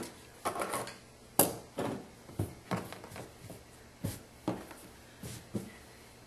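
Hands smoothing and patting a cotton t-shirt flat on a wooden table: a string of short rubs, pats and light knocks, the sharpest about a second and a half in.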